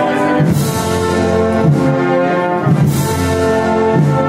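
Brass band (banda de música) playing a slow Holy Week processional march live, with held brass chords and a percussion stroke about every second and a quarter.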